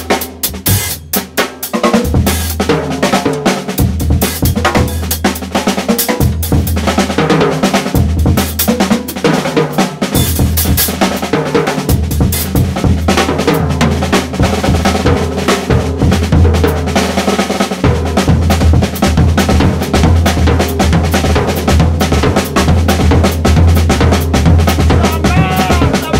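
Drum kit playing a busy breakbeat groove over a deep bass line whose notes change about every two seconds.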